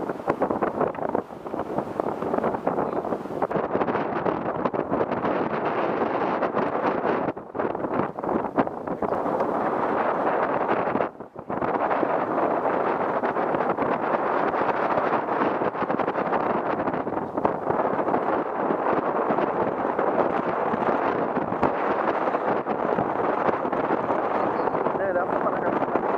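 Wind buffeting the camera microphone on an open boat at sea: a steady, loud rushing noise that briefly drops out twice.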